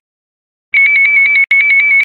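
Brazilian electronic voting machine's confirm sound, the signal that a vote has been cast: a rapid trill of high beeps starting under a second in, briefly breaking off and resuming about half a second later.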